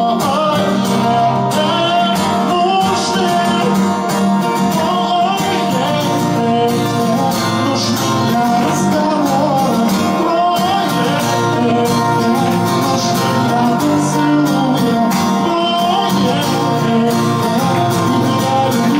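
Two acoustic guitars playing an instrumental passage together: one strumming chords while the other picks a melody line over them.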